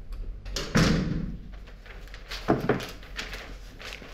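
A panelled front door swinging shut with a heavy thud about a second in, followed by a couple of sharp knocks and a few lighter clicks.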